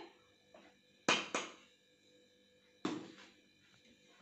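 Stainless-steel tumbler tapped twice against a steel mixing bowl about a second in, then one more steel clink near three seconds, each with a brief metallic ring.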